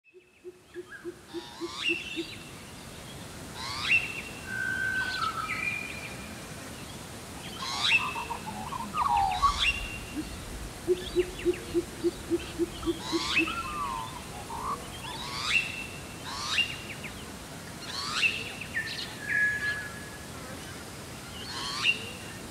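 Australian bush birdsong: a pheasant coucal gives two runs of deep, evenly spaced 'oop' notes, one at the start and one about halfway through. Over it, another songbird repeats a short whistled phrase with sharp sweeping notes every couple of seconds.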